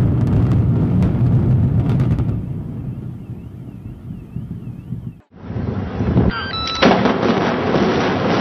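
Deep rumble of apartment towers collapsing in an implosion demolition, with sharp cracks in the first two seconds, then dying away. About five seconds in, it cuts off abruptly and another building demolition begins, loud rumbling with a brief high whistle-like tone.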